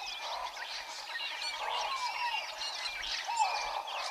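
A dense chorus of birds chirping and calling: many short whistled notes and quick pitch glides overlapping over a steady background hiss.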